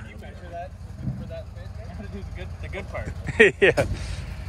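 A vehicle engine idling with a steady low rumble under faint background talk, then a man's loud voice briefly near the end.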